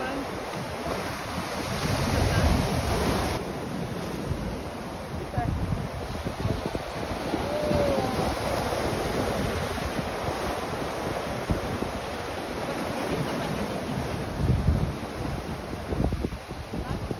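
Black Sea waves breaking and washing over a rocky shore, with gusts of wind buffeting the microphone. The hiss of the surf is brighter for the first few seconds, then drops away suddenly.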